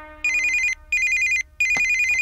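Mobile phone ringing with an electronic trilling ringtone: three short bursts of rapid warble, the first two about half a second each and the third a little longer.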